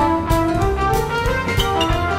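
Swing-style jazz band music: brass instruments playing over a drum kit that keeps a steady beat of about three hits a second.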